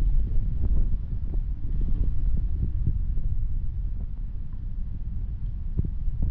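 Muffled low rumble of water moving past a submerged camera housing, with many small clicks and knocks scattered through it.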